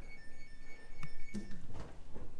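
Stainless steel side-by-side refrigerator door being pulled open: a steady high tone lasting over a second, with two light clicks about a second in.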